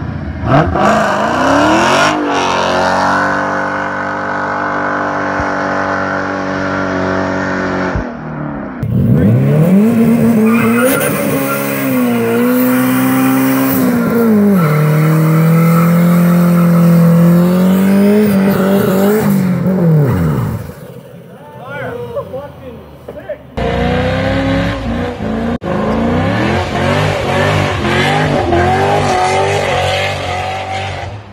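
Car engines revving hard during burnouts, pitch climbing, holding high for several seconds and swinging up and down, with tires spinning and squealing. The sound jumps abruptly from one car to another a few times, with a quieter stretch about three quarters of the way through.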